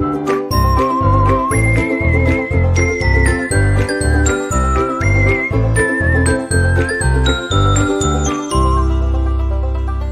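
Upbeat jingle music for an animated logo outro: a whistled melody over a bouncing bass on a steady beat, with bright bell-like notes, ending on a long held chord near the end.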